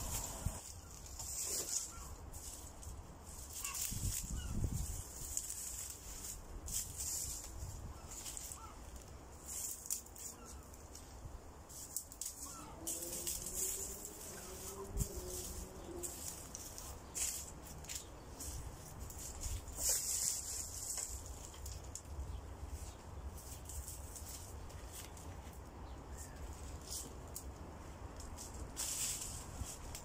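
Dry fallen leaves and bark mulch rustling and crackling in irregular handfuls as they are pulled up and spread around a young tree, over a low wind rumble on the microphone.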